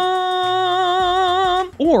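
A man singing one long held note on 'my', sung flat, below the intended pitch. Partway through the note a regular vibrato comes in, and it breaks off just before spoken words near the end.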